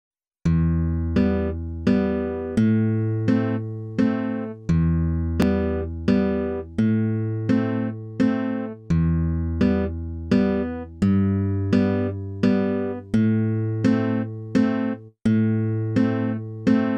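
Background music: a plucked guitar playing evenly paced single notes, about one every 0.7 seconds, each ringing and fading, over low bass notes that change about every two seconds.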